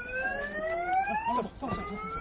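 An electronic alarm tone sweeping upward in pitch over about two seconds, then starting a fresh rise near the end, heard over several people's voices during a scuffle.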